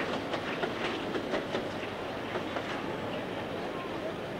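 Steady hiss with scattered faint crackles from an old recording's soundtrack.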